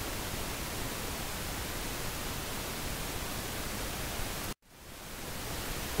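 Steady hiss of a voice recording's noise floor, with no other sound. It cuts out abruptly to silence about four and a half seconds in, then fades back up.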